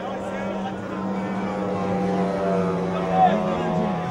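Racing outboard engine on a tunnel-hull powerboat running at high speed with a steady pitch, which drops near the end.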